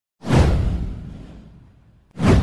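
A whoosh sound effect with a deep low boom under it. It swells in suddenly about a quarter of a second in, then fades away over about a second and a half.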